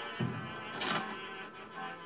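A film soundtrack played back through the room and picked up by a camera microphone: music, with a sudden loud burst about a second in.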